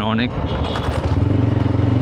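TVS Apache RTR 160 4V motorcycle's single-cylinder engine running steadily at a low road speed, heard from the rider's position.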